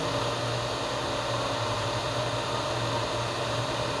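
Steady background hum and hiss: a constant low drone with an even noise over it, unchanging throughout.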